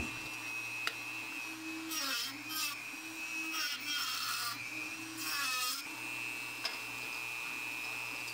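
Dremel rotary tool running with a spinning cut-off blade, its motor pitch dipping as the blade bites into a plastic tape dispenser, with spurts of gritty cutting noise between about two and six seconds in.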